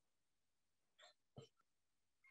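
Near silence, broken by two faint, very short sounds about a second in, less than half a second apart.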